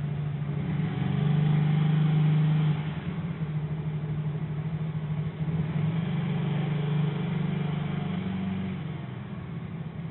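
BMW E36's M43 four-cylinder engine idling with the air conditioning running under test, a steady low hum. It runs louder for about two seconds starting a second in, then settles back.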